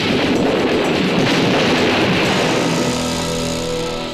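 Loud, dense noise of a car fire burning in an action-film sound mix, with faint background music underneath that grows clearer near the end.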